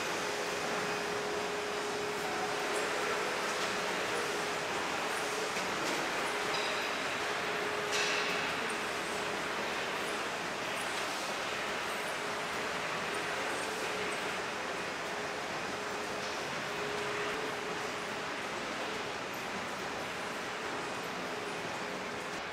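Steady rushing room noise with a faint constant hum, like a gym's ventilation or air handling, with a brief louder knock about eight seconds in.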